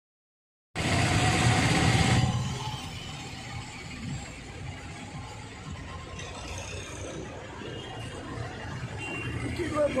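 Street traffic noise: loud for about a second and a half just after the sound cuts in, then a steady traffic background.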